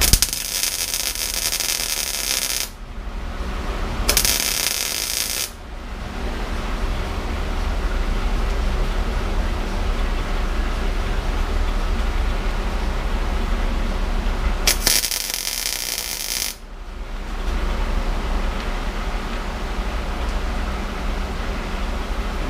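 MIG welder arc crackling in three bursts, about two and a half seconds, a second and a half and two seconds long, as weld blobs are laid onto a broken exhaust stud seized in a cylinder head to get a grip for removing it. A steady low hum runs beneath throughout.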